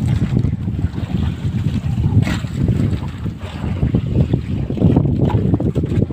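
Wind buffeting the microphone aboard a bamboo-outrigger fishing boat (bangka) under way on choppy sea, a loud, steady, fluttering low rush with water washing past the outriggers.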